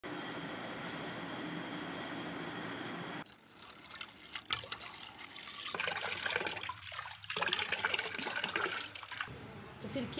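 Water splashing as someone washes soap off her face by hand, after a few seconds of a steady hiss.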